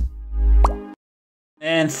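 Background music with a deep bass and a quick rising blip, which cuts off suddenly about a second in.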